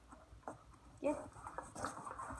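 Soft footsteps and a dog's paws moving over foam floor mats, with one short vocal sound about a second in.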